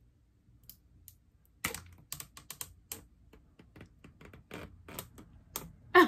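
Fingers and fingernails picking at a boxed MacBook Air's packaging: a run of irregular sharp clicks and crackles, a few a second, that starts about a second and a half in and stops just before the end.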